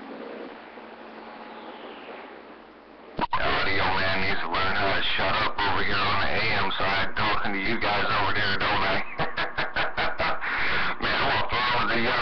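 CB radio receiver on AM channel 28 hissing with band noise. About three seconds in, a strong incoming station opens up: a voice through the radio's speaker, cutting in and out rapidly for a moment near the end.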